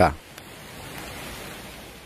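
Steady, even rushing of a swollen river in flood: fast, muddy floodwater running high along its banks.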